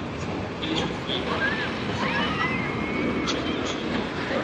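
Wooden roller coaster train running along its wooden track, a steady rushing rumble, with background voices and a few faint high cries about halfway through.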